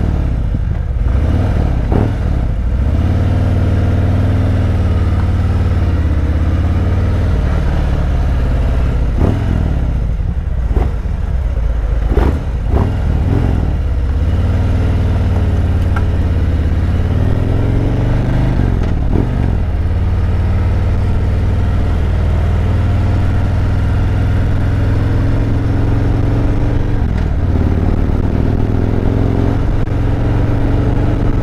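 2017 Harley-Davidson Road Glide Special's Milwaukee-Eight V-twin engine running at low speed in traffic, its pitch rising and falling gently as the bike pulls away and slows. A few short knocks come in the first half.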